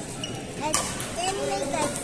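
Badminton rally: rackets striking the shuttlecock, a few sharp clicks about a second apart, over children's voices and chatter in the hall.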